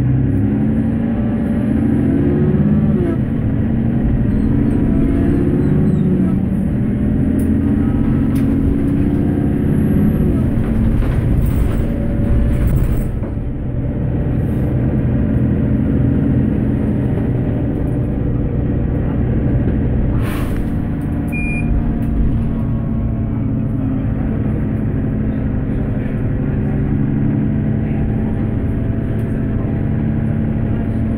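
Inside a Mercedes-Benz Citaro bus under way: its OM457LA six-cylinder diesel engine running, its pitch rising and falling over the first dozen seconds, then settling to a steadier hum. A short sharp click comes about twenty seconds in.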